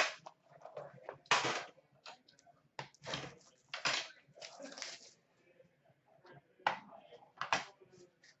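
Hands handling a hockey card box's packaging on a glass counter: the case lid is lifted off and set down and the inner box is taken out, giving a series of short clacks, scrapes and rustles.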